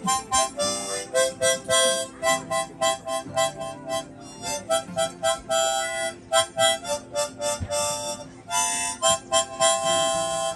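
Harmonica played solo: a lively tune of quick, rhythmic short notes and chords, played with the hands cupped around the instrument.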